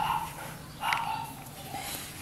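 Two short animal calls about a second apart.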